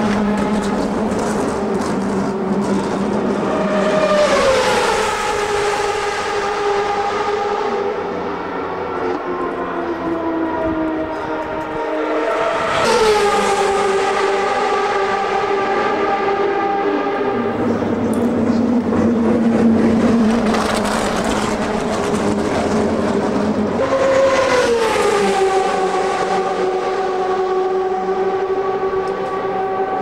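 CART Champ Car turbocharged V8 engines running and going past, three times rising to a peak and then dropping in pitch as a car passes, with a steady engine drone in between.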